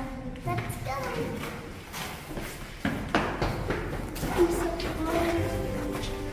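Footsteps knocking on a hard, paved cave walkway, with indistinct voices now and then. Background music fades in near the end.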